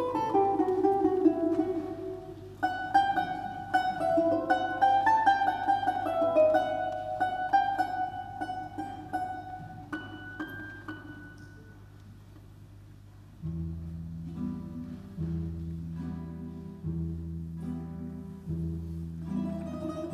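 Solo balalaika playing a quick plucked melody over a Russian folk-instrument orchestra. The music thins and quietens about ten seconds in, then low sustained chords enter about halfway through, shifting every second or two under soft plucked notes.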